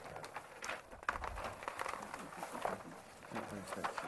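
Faint, indistinct talk with scattered small clicks and rustles of handling in a meeting room; a short stretch of murmured speech comes near the end.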